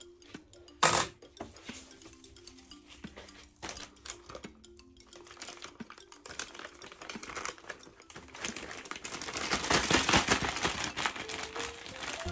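A single sharp snip of scissors cutting the end off a plastic piping bag about a second in, then plastic bag crinkling and rustling that grows louder through the second half as the bag is handled and pushed into another bag. Soft background music plays throughout.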